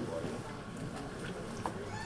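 A quiet pause in a large room: faint room noise with weak, indistinct voices in the background, and one small click late on.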